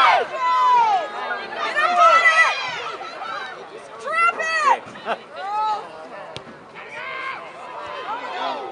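Several voices shouting and calling out at once across a soccer field, the words indistinct. The shouting is loudest in the first few seconds and dies down after. A single sharp click comes about six seconds in.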